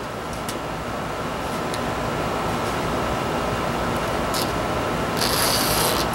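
Steady background hiss with a few faint clicks as thin steel suspension cable is handled and fed through a lighting-fixture gripper. Near the end comes a brief scraping rasp of the cable being drawn through the gripper.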